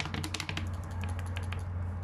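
A capped plastic bottle of detergent-and-water hand wash being shaken and handled, giving quick irregular clicks and taps of fingers and plastic, thickest in the first half second. A steady low hum runs underneath.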